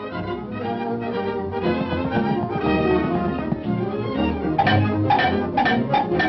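Orchestral cartoon score with no singing. From a little past two-thirds of the way in, it breaks into short accented stabs, about two a second.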